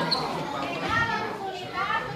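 Children's high-pitched voices and chatter, with short calls about a second in and near the end.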